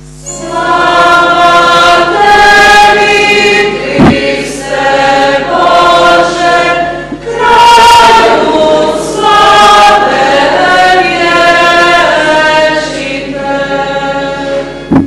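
A woman singing a liturgical chant to electronic keyboard accompaniment, in sustained phrases with short breaks between them. A single low thump sounds about four seconds in.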